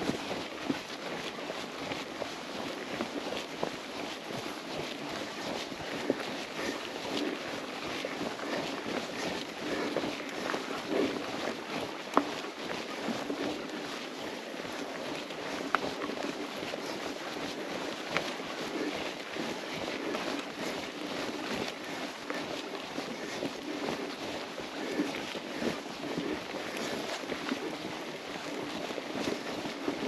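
Mountain bike rolling along a dirt singletrack: a steady rolling hiss of tyres and moving air, with frequent small clicks and rattles from the bike and a few sharper knocks.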